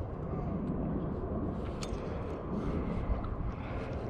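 Steady low rumble of wind on the camera's microphone, out on open water, with one faint click a little under two seconds in.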